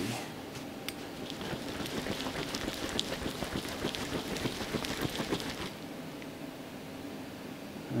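A jar of soil, water and soap being handled and wiped with a paper towel: dense, irregular rustling, crackling and sloshing that dies down about six seconds in, leaving faint room noise.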